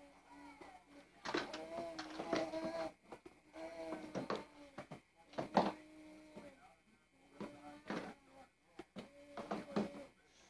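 A baby making short, wordless vocal sounds, some held on one note, with pauses between, and a few sharp clicks and knocks from the hard plastic activity-center toy it is handling.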